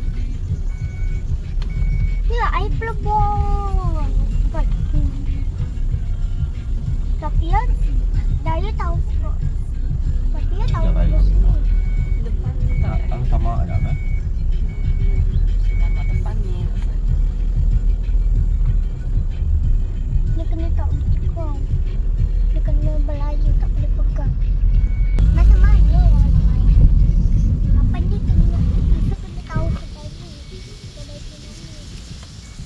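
Low rumble of a car's engine and road noise heard from inside the cabin as it moves slowly, with voices or singing over it and a regularly repeating high beep. The rumble drops away just before the end.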